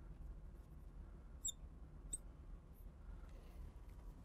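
Marker tip squeaking faintly as it draws on a glass lightboard, with two short high squeaks about one and a half and two seconds in, over a low steady hum.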